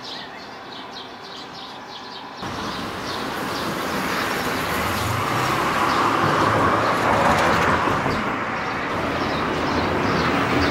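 Birds chirping over outdoor ambience; about two and a half seconds in the background noise steps up abruptly and a passing vehicle's road noise swells, loudest around seven seconds, then eases a little.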